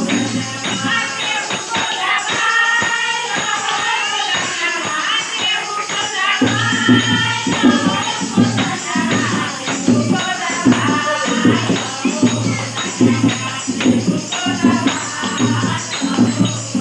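A group of women sings a Shiv charcha devotional song, accompanied by a dholak and hand-clapping. The dholak's deep strokes drop out for a few seconds after the start and come back about six seconds in, in a steady beat under the singing.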